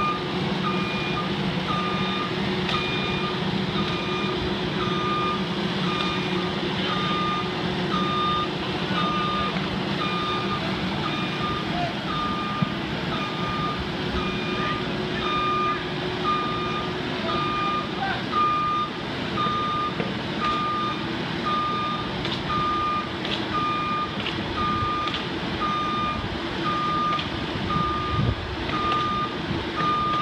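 Boom lift's motion alarm beeping steadily, about once a second, over its engine running as the boom raises a load.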